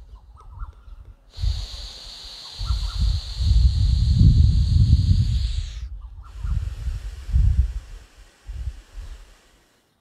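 Slow, deep breaths drawn through one nostril at a time in alternate-nostril pranayama (anulom vilom), close to a clip-on microphone. A long breath runs from about a second in to about six seconds, then a second, softer breath follows until near the end, with breath gusts rumbling on the microphone.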